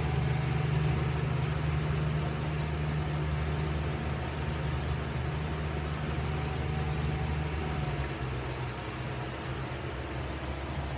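A boat's engine running steadily while the boat is under way at speed, with a steady rush of water and wind noise over it. The low engine note eases slightly about eight seconds in.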